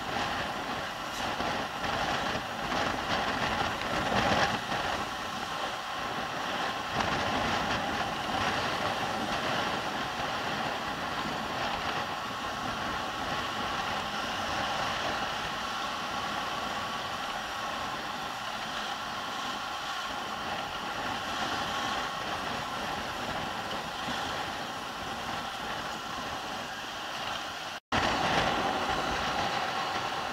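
Riding sound of a Yamaha NMAX 155 scooter's single-cylinder four-stroke engine running steadily at street speed, mixed with road and wind noise on the rider's camera. The sound cuts out for a moment about two seconds before the end.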